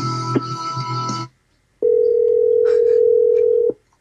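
The end of a pop-punk song playing over a phone line cuts off about a second in. After a brief gap, a steady telephone tone sounds on the line for about two seconds as the call to the hung-up listener is placed again.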